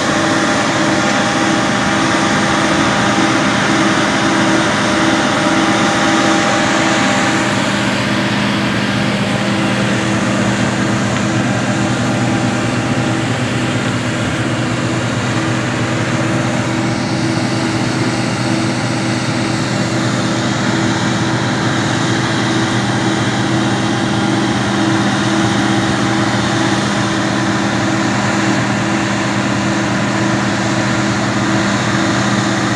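Claas Lexion combine harvester running steadily while its unloading auger pours threshed oats into a trailer.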